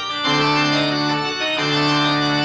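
Rodgers electronic touring organ playing full sustained chords, with a brief break and a chord change about one and a half seconds in.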